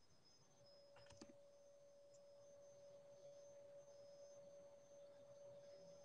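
Near silence: room tone with a faint steady tone and a small click about a second in.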